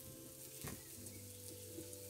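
Meat patties and potato chips sizzling faintly on a flat barbecue hotplate, under soft background music of held notes, with one light tap about a third of the way in.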